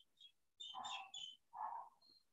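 Faint, high-pitched animal calls: several short squeaks about a second long in all, followed by a softer lower call near the end.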